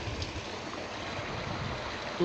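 Steady rush of flowing water from excess water discharging into a concrete drain, with a low, uneven rumble underneath.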